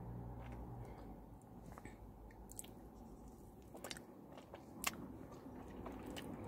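Faint chewing of a mouthful of ice cream cone topped with chocolate chips, with a few soft crunches and clicks, the sharpest about five seconds in.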